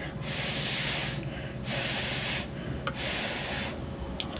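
Breath blown out three times close to the microphone over a spoonful of rice, each blow a hiss lasting about a second with short pauses between.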